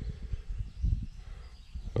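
Soft handling sounds as a black OTF knife is set down on a plastic digital kitchen scale, over low, irregular rumbling.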